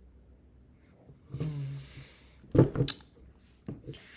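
A man's low, wordless groan, then a short loud huff of breath with voice in it, the loudest sound here. Both sound like frustration over a hard question. A faint click comes near the end.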